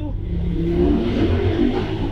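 Car engine running and revving, with a steady rushing noise.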